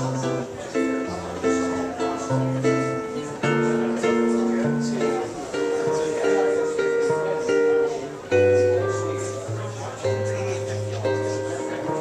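Jazz guitar playing an instrumental chord-melody passage in bossa nova style: plucked chords ring on over a moving bass line.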